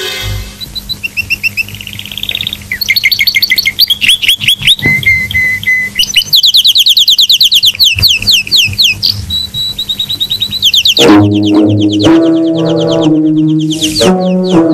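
Birds chirping in quick runs of short falling chirps at several pitches, a forest soundtrack effect. About eleven seconds in the chirping stops and low, sustained brass-like music begins.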